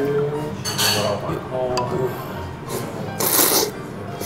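Tsukemen noodles being slurped, heard as short noisy bursts about a second in and again, loudest, a little after three seconds in.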